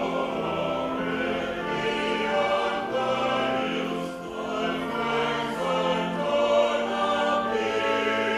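Church choir singing with organ accompaniment: long held chords over a low bass line that moves in slow steps.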